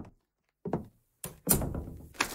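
Sound-effect thunks: a short dull knock a little over half a second in, then a longer, louder one about a second and a half in.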